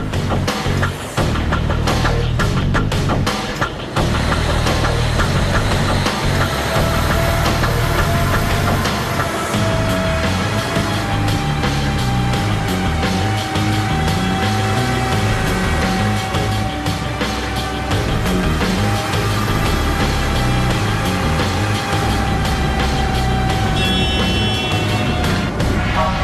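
Background music over a Mercedes-Benz Actros truck running up to speed on a roller test bench, with a steady whine that climbs slightly and then holds as the truck reaches its top speed.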